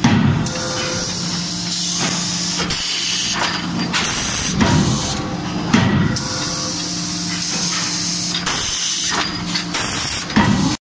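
CNC die forging hammer working hot steel: several sharp blows at uneven intervals over a constant hiss of air and a steady low machine hum.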